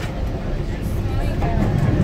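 Steady low rumble of a Metra commuter train in motion, heard from inside the passenger car.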